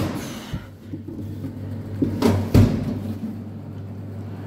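A few knocks, the loudest a heavy thud about two and a half seconds in, over a steady low hum.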